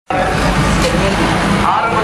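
Busy street noise from a passing procession: vehicle engines and a crowd, with voices mixed in, steady and loud throughout.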